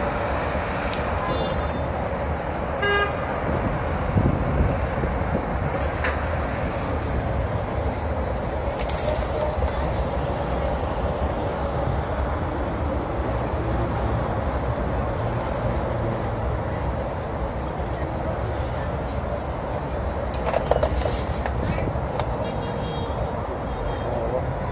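Dense roundabout traffic heard from the open top deck of a tour bus: a steady rumble of engines and road noise, with brief car-horn toots, one about three seconds in.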